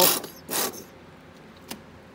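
A plastic squeeze bottle of thinned black paint sputtering as paint and air squirt out onto a canvas: two short splattering spurts, the second about half a second in, then a small click near the end.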